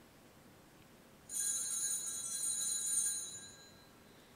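A small metal altar bell rings with a bright, high-pitched tone. It starts suddenly about a second in, holds for about two seconds and fades away near the end.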